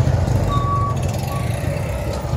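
Small motorcycle engine of a sidecar tricycle running close by, a steady, fast low pulsing beat.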